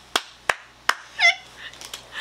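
Excited laughter after the reveal: three short sharp sounds about 0.4 s apart, then, a little past halfway, a brief high squeal that swoops down and up.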